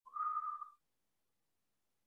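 A single short whistle-like tone, under a second long, rising slightly at its start and then held on one pitch before cutting off.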